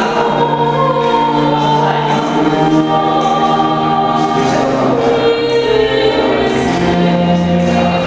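A small choir singing long held notes with a live string ensemble of violins and cello accompanying.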